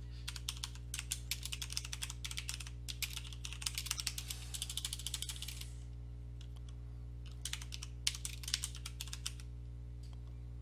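Typing on a computer keyboard in quick runs of keystrokes, with a pause of about a second and a half after the first six seconds before a second run.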